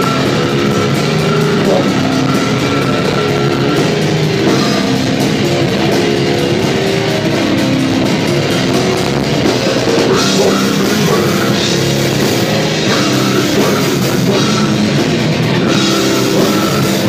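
Live brutal death metal: a drum kit and heavily distorted electric guitars playing a dense riff, loud and continuous throughout.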